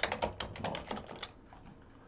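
Typing on a computer keyboard: a quick run of keystrokes that stops about a second and a half in.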